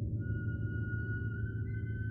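Contemporary chamber-ensemble music: a steady, low, rumbling drone with a thin, high, sustained tone that enters just after the start and holds, joined by fainter high held tones.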